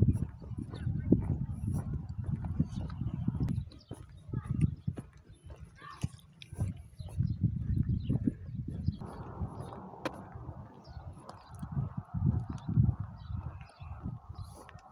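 Footsteps of a person walking on an asphalt path, a run of irregular dull thuds with some rumble on the microphone.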